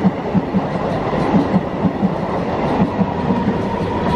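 A 16-car MEMU electric multiple unit accelerating past at close range: a steady loud rush from the passing coaches, with the wheels clattering over the rail joints in a repeated knock.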